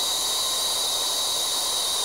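Steady hiss of a Harris Inferno brazing torch flame held on a steel joint while low-fuming bronze rod melts into it, with a faint high whistle running under it.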